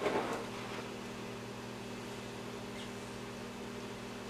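Steady low electrical hum of room tone, with a short rustle right at the start.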